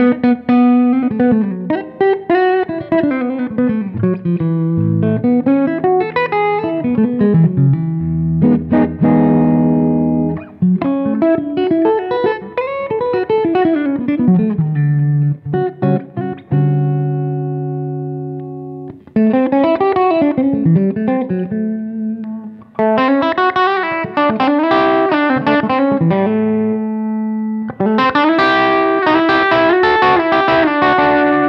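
Godin LG-90 electric guitar with Seymour Duncan P-90 pickups, played through a Strymon Iridium amp modeller on a Fender-style clean setting with a little reverb. It plays quick single-note runs that climb and fall, with chords left to ring out twice: briefly about a third of the way in, and longer about halfway through.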